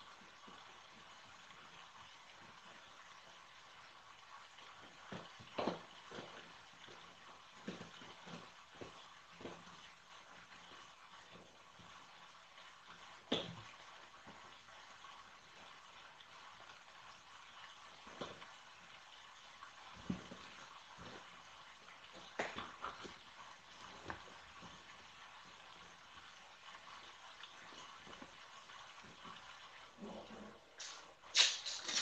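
Faint, scattered rustles, rips and taps of masking tape being pulled off and pressed onto the inside of a cardboard box: about a dozen short sounds at irregular intervals over a steady low hiss, the loudest near the middle.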